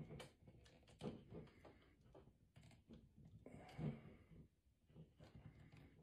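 Near silence: faint clicks and taps of a plastic action figure and its whip cable being handled, with one short breathy vocal sound just before four seconds in.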